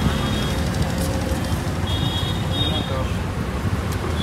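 Steady rumble of road traffic, with faint voices of people talking nearby.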